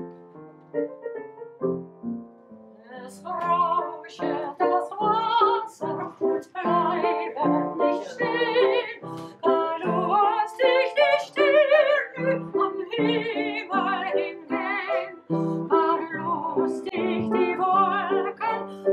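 Upright piano playing alone, then about three seconds in a woman's classically trained voice comes in, singing an art song with wide vibrato over the piano accompaniment.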